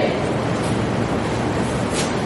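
A pause in speech filled by a steady, even rushing noise with no distinct events: the background noise of the hall and recording.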